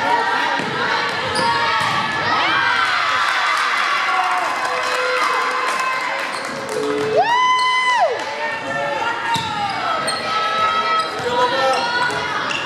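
Volleyball players and spectators shouting and cheering in a gym, over scattered sharp hits of the ball and shoe squeaks on the hardwood. A single high call is held for about a second, around seven seconds in.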